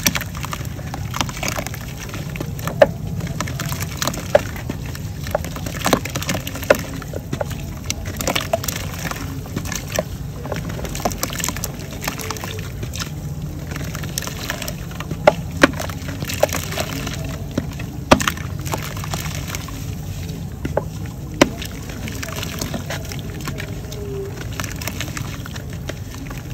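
Hands crumbling a block of dry red mud into a basin of water: repeated sharp cracks and snaps of the clay breaking, with crumbs and chunks splashing into the water. A steady low rumble runs underneath.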